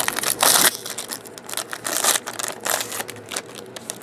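Foil wrapper of a baseball card pack crinkling as it is torn open by hand, loudest in the first second, then continuing in smaller crackling bursts as the cards are pulled out.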